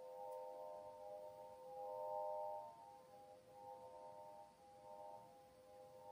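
Svaram Air 9-bar swinging chime (flow chime) ringing softly as it sways, its metal bars sounding several overlapping sustained tones that swell and fade, loudest about two seconds in.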